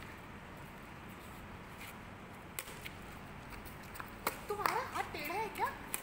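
Badminton racket strings hitting a shuttlecock: sharp single hits at about two and a half and about four seconds in, over a steady background hum. Voices call out near the end.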